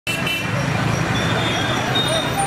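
Busy street traffic: steady road noise of passing motorbikes and cars, with voices mixed in.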